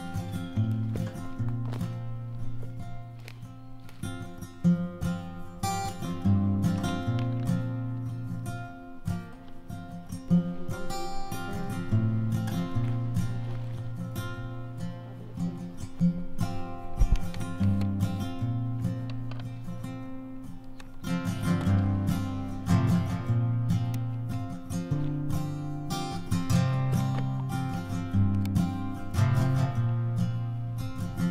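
Background instrumental music led by acoustic guitar: plucked notes over held low notes, at a steady level throughout.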